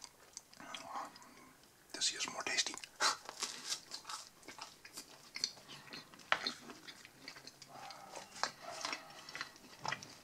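Close-up chewing of crusty baguette bread dipped in meat salad: the crust crunches and crackles in many short, irregular snaps, quieter for the first couple of seconds and then steady bite after bite.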